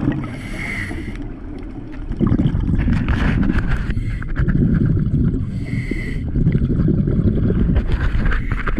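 Underwater scuba breathing through a demand regulator: a hissing inhalation with a steady whistle-like tone at the start and again around six seconds, and between them the low rumble of exhaled bubbles.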